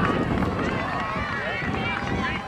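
Many voices shouting and calling out over one another at a youth soccer game, overlapping high-pitched calls with no single clear speaker, over a low rumble of wind on the microphone.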